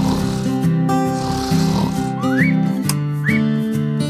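Cartoon snoring sound effect: a long breathy snore, then two short rising whistles, over light background music.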